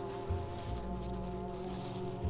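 Background music holding a steady sustained chord over a low bass note.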